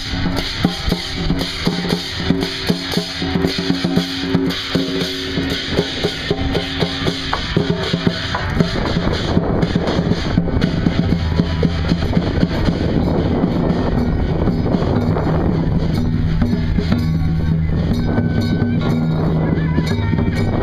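Procession drum and cymbals beating a quick, regular rhythm over steady low tones. About halfway through, the separate beats give way to a denser, steadier din with a low hum.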